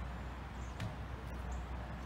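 Quiet outdoor ambience: a steady low rumble with a couple of faint, brief high chirps.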